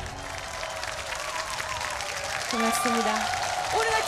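Audience applauding as a song's music stops, with voices heard over the clapping.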